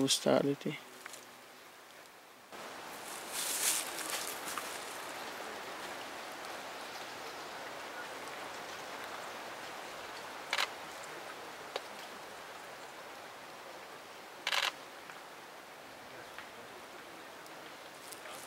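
Steady outdoor background hiss, with a louder patch a few seconds in and two short, sharp noises later on, about four seconds apart.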